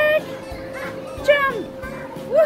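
A young child's short, high-pitched vocal squeals: one at the very start and another, falling in pitch, about a second and a half in.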